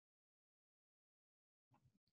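Near silence: dead silence, with a very faint room tone beginning near the end.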